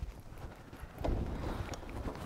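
Footsteps on a concrete floor with scattered knocks and low thuds as two people walk up to and climb onto a parked motorcycle.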